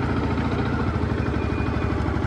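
Yamaha sport motorcycle's engine idling steadily, an even low rapid pulse with no revving.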